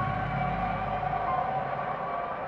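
Ambient film-score drone: several steady held tones over a low rumble, easing off slightly toward the end.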